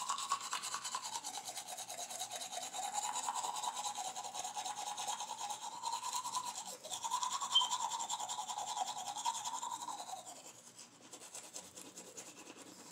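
Electric toothbrush buzzing while brushing teeth. Its tone sags and recovers in pitch as it is pressed against the teeth, breaks off briefly near the middle, and stops about ten seconds in, leaving quieter scrubbing.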